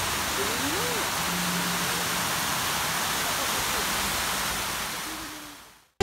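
Water jets of a large tiered garden fountain, the Latona Fountain, splashing into its basin: a steady, even rush of falling water with faint voices of a crowd underneath. The sound fades out near the end.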